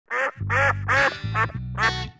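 Five quick duck quacks in a row, over the low opening notes of the theme music.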